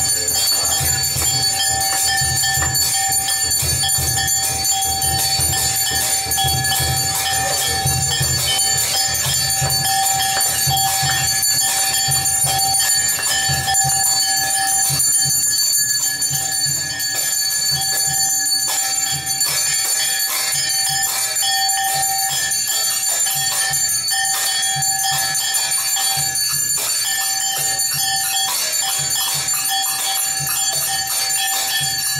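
Temple bells ringing continuously during aarti, with a fast, even clangour and a rapid low beat underneath.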